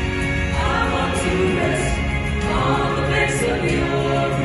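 A mixed vocal group of seven young men and women singing a gospel song in close harmony, holding chords, their voices carried through handheld microphones.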